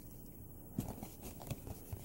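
Faint handling noise: a few soft ticks and rustles as plastic action figures and cardboard packaging are moved about by hand.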